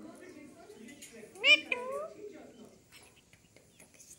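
Alexandrine parakeet giving one loud, meow-like call about a second and a half in, followed at once by a short note rising in pitch.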